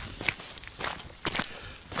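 Footsteps on a gravel forest track: a few crunching steps at a walking pace.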